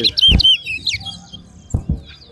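Large-billed seed finch (towa-towa) singing a quick run of curved whistled notes in the first second. There are two dull thumps, one about a third of a second in and one near the end.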